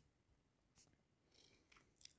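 Near silence: room tone, with a few very faint brief sounds about a second in and near the end.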